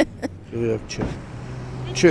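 A steady low hum of a car engine running in street traffic, starting about a second in, after a short fragment of a voice.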